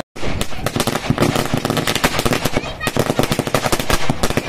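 A string of firecrackers going off on the ground: a rapid, irregular run of many small bangs each second, starting suddenly.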